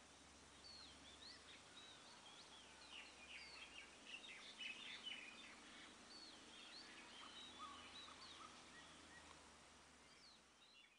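Faint birds chirping: many short, quick whistles and chirps, busiest in the middle, over a low steady hum.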